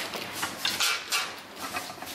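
Irregular short bursts of rustling and clattering as metal gas springs are handled and loaded into a testing rig by hand, with a few sharp knocks.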